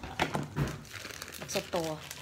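Thin plastic bag crinkling as it is handled, a quick run of crackly rustles.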